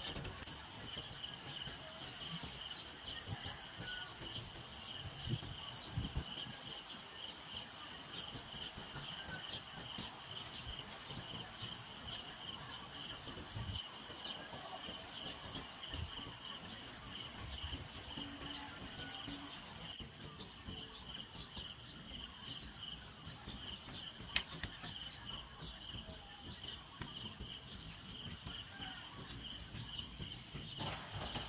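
Insects chirping steadily in several high-pitched tones, with a separate high double chirp repeating about every two-thirds of a second until about twenty seconds in.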